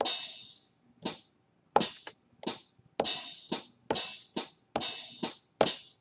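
Hi-hat samples played on an Akai MPC drum pad, about a dozen irregularly spaced hits. Each press of the pad sounds one hit, and each lift of the finger sounds a different articulation of the hi-hat. The first hit rings longer than the rest.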